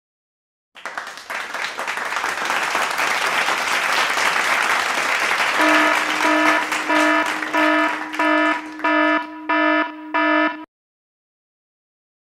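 Applause-like crowd noise, joined about halfway through by a loud buzzer tone that beeps repeatedly, roughly twice a second and faster near the end. Both stop abruptly together.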